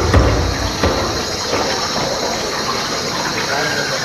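Drum-heavy music ending about a second in, then an audience applauding and cheering at the end of a gymnastics group routine.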